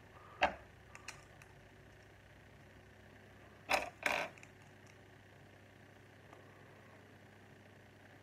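Lego plastic bricks being handled and pressed together by hand: a few short, sharp clicks, the loudest two close together about four seconds in, over quiet room tone.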